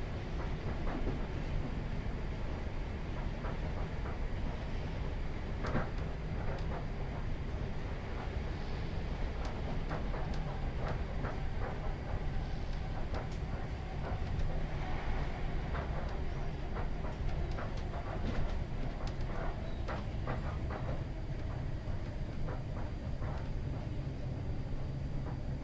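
Inside a British Rail Class 317 electric multiple unit on the move: a steady low rumble of the wheels on the track, with scattered clicks and knocks throughout.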